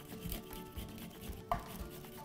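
A hand vegetable peeler scraping down a carrot held against a cutting board, a run of quick strokes, with one sharper knock about one and a half seconds in.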